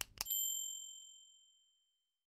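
Two quick mouse-click sound effects, then a bright notification-bell ding that rings out and fades over about a second and a half.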